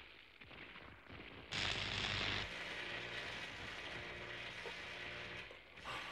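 Machinery sound effect: a sudden loud burst about one and a half seconds in, then a steady mechanical hum that stops just before the end.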